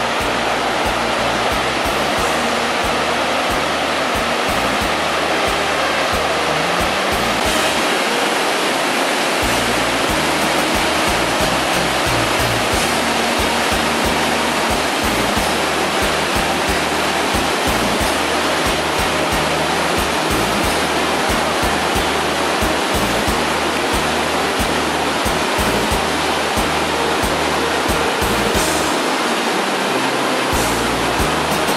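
Steady rush of white water from a mountain stream cascading over boulders, with music underneath.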